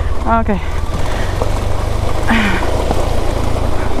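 Single-cylinder engine of a KTM 390 Adventure motorcycle running steadily on a rocky downhill dirt track, with wind and riding noise over it.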